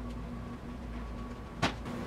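Steady low hum in the shop, with one short knock about one and a half seconds in as drums are set down on the wooden workbench.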